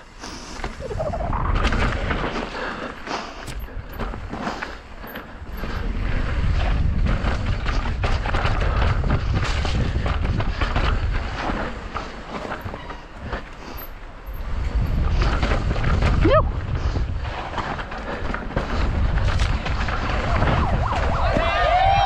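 An e-bike descending a steep dirt-and-rock trail: wind rumbles on the rider-mounted camera's microphone over the clatter and knocks of the bike and its tyres on roots and rock. Voices start just at the end.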